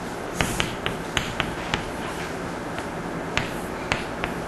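Chalk striking a blackboard while an equation is written: about ten sharp, irregularly spaced ticks as the chalk lands on the board for each letter and exponent.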